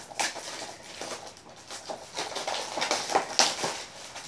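Clear plastic shrink wrap being peeled off a Blu-ray case and crumpled in the hand: a run of irregular crinkling crackles, busiest and loudest in the second half.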